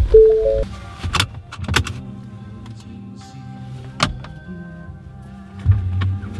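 A car's electronic chime sounds a short two-note tone inside the cabin, followed by a few sharp clicks and knocks, over faint music.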